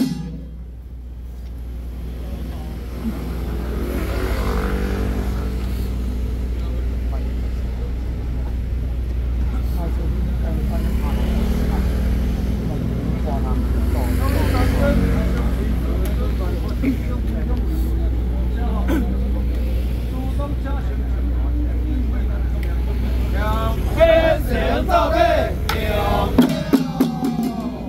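Men of a xiaofa ritual troupe chanting together, their drums silent, over a steady low rumble like an idling engine. Near the end the hand-held frame drums come back in with sharp strokes.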